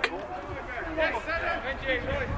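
Voices speaking or calling out, in a few short phrases that rise and fall in pitch.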